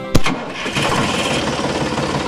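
A sharp click, then an engine-like running sound starts up: a rapid, even chatter that holds steady.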